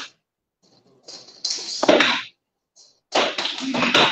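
Body contact and movement in a hand-to-hand drill against punches: two bursts of rustling and shuffling with light hand and arm slaps, and one sharper hit near the middle.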